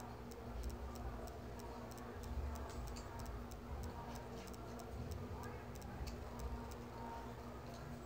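Faint, light, high-pitched ticking, a few ticks a second at an uneven pace, over a steady low hum.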